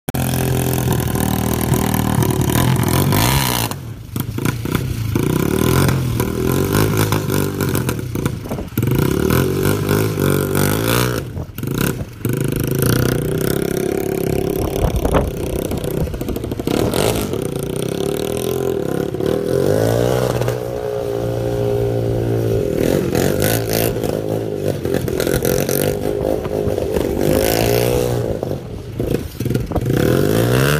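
Small motorcycle engine revving up and down again and again, its pitch rising and falling, with a few short drops in level.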